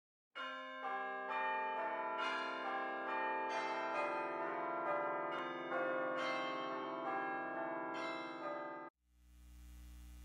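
Bells ringing a peal, a new bell struck about twice a second with the tones ringing on over one another, cut off abruptly near the end. A low steady hum follows.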